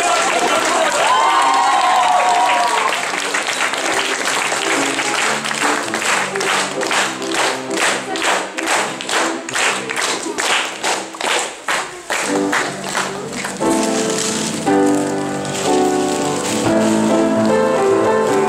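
Applause over music that settles into rhythmic clapping in time, about two claps a second; about fourteen seconds in, the clapping gives way to louder music with piano.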